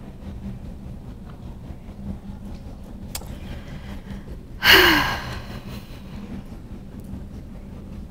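A person's loud, exasperated sigh into the microphone about halfway through, a short breathy exhale falling in pitch, over a steady low hum.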